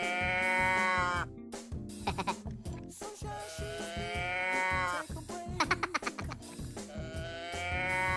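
A cow moo-box toy tipped over, giving a drawn-out, slightly falling 'moo': one ending about a second in, another in the middle, and a third starting near the end. Background music with a steady beat plays under it.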